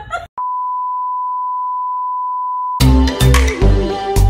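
A steady, single-pitched electronic bleep tone held for about two and a half seconds, cut in by an edit. It gives way near the end to loud music with a heavy bass beat.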